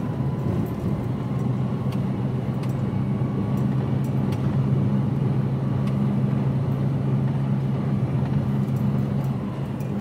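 HGV container truck's diesel engine running steadily at a constant cruise, heard from inside the cab with tyre and road noise and a few faint clicks.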